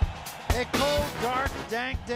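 Broadcast bumper music with a steady drum beat, about two beats a second. A voice comes in over it about half a second in.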